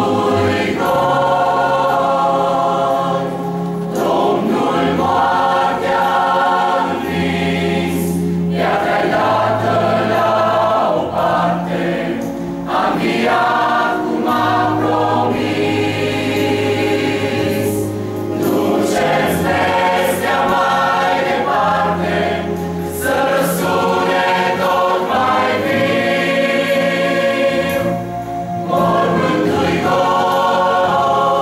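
Mixed choir of women and men singing a hymn in parts, in a steady, full sound with a short drop between phrases near the end.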